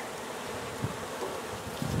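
Honey bees buzzing in a steady hum from an open hive box, with bees flying close around during a frame inspection.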